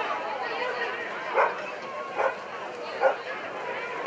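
A dog barking three times, short single barks a little under a second apart, over background voices.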